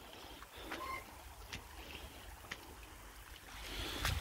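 Faint trickling and sloshing of shallow water running over a flooded ford, with a few small splashes and a low rumble of wind on the microphone.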